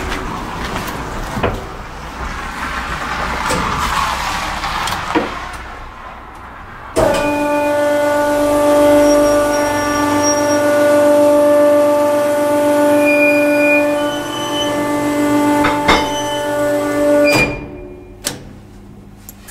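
Hydraulic platform lift's pump motor starting abruptly about seven seconds in, running with a loud, steady hum while the platform travels, and cutting off suddenly near the end. Before it starts there is broad rustling noise with a few knocks.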